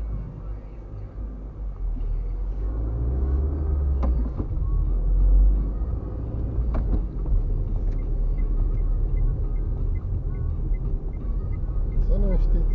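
Car driving on a town street, heard from inside the cabin: a steady low rumble of engine and tyres that builds over the first couple of seconds as the car gets moving. A couple of short knocks come through, about four and seven seconds in.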